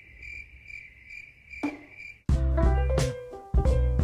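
Cricket-chirping sound effect, the stock gag for an awkward silence: a steady high trill that pulses about twice a second. It cuts off suddenly a little over two seconds in, when upbeat music with bass and plucked guitar starts.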